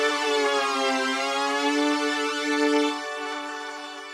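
Behringer VC340's string section holding a chord. It dips in pitch about a second in and comes back, then is released about three seconds in and fades out slowly.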